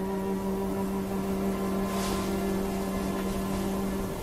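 Film score: one low note held steady, with a faint hissy swell about two seconds in.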